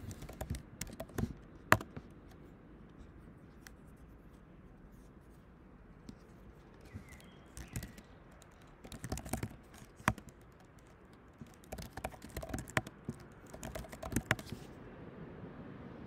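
Typing on a computer keyboard in several short bursts of key clicks, with pauses between them.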